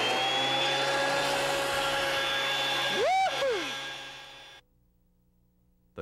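Delta 22-560 12½-inch portable planer's motor running with a steady high-pitched whine, just after spinning up. About three seconds in there is a brief rise and fall in pitch, then the sound fades and cuts off to silence about four and a half seconds in.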